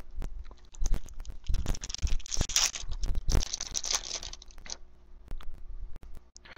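Baseball trading cards handled by hand: rustling and scraping as cards slide against each other, with small clicks. There are two longer stretches of rustle, starting about a second and a half in and again just after three seconds.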